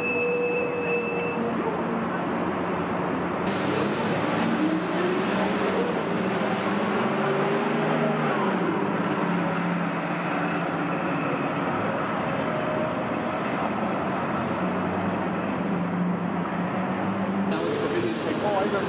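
A city transit bus's diesel engine running as the bus drives past at close range, with steady street-traffic noise. The engine note shifts slightly as it moves.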